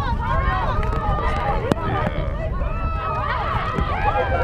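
Several high-pitched voices shouting and calling over one another, with no clear words, over a steady low wind rumble on the microphone.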